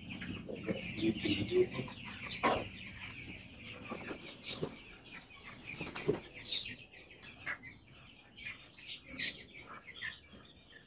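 A flock of young chickens peeping and chirping, with wings flapping now and then. A few sharp knocks stand out, the loudest about two and a half and six seconds in.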